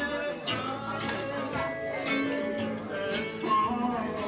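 Live Latin-style music on acoustic guitar with a steady bass line and light percussive clinks on the beat.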